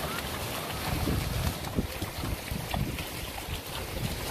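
Wind buffeting the microphone over the wash of the surf, with short splashes of horses' hooves walking through shallow seawater.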